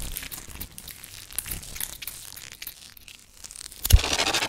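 Electroacoustic music made of granulated, saturated noise from processed power-tool recordings: a dense crackling texture with many short clicks, and a sharp hit with a deep low thump just before the end.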